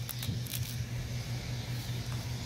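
Thin plastic protective laminate film rustling and crinkling faintly as it is peeled back and pulled off its roll, over a steady low hum.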